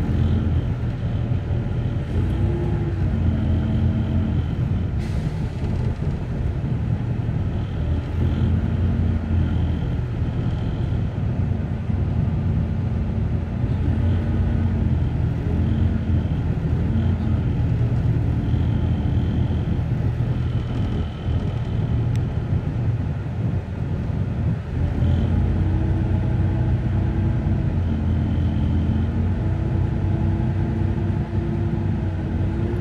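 Cabin noise inside a moving Greyhound coach: a steady low engine and road rumble, with a faint higher whine that comes and goes.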